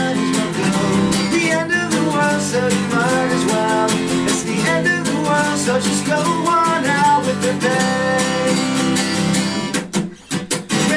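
Acoustic guitar strummed and picked, with a man singing along into a close microphone. The playing pauses briefly right at the end.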